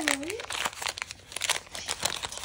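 Paper wax-pack wrapper of a trading-card pack crinkling and tearing as it is peeled open by hand, in a dense run of irregular crackles.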